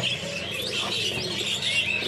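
Many caged songbirds chirping and tweeting at once: a dense, overlapping run of short high chirps.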